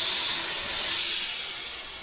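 Gravity-feed airbrush hissing steadily as air flows through it during a spray stroke. The hiss slowly fades toward the end.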